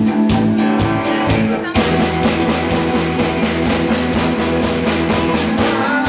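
A live rock band playing an instrumental passage without vocals: electric guitar, bass guitar and drums over a steady beat. About two seconds in, the music changes abruptly into a new section with a strong bass line.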